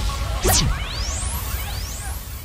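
Logo-transition sound effect: a sharp swoosh about half a second in, followed by rising whooshing sweeps, over the last of a dancehall track as it fades.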